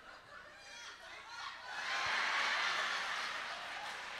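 Audience laughing: scattered chuckles at first, then the laughter swells louder about halfway through and eases off a little toward the end.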